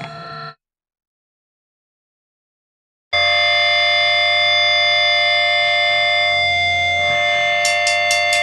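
Gap between two tracks of a grindcore demo: the last sound of one song rings out and cuts off about half a second in, then silence. About three seconds in, a steady, unchanging drone of several held tones begins the next track, with a few quick clicks near the end.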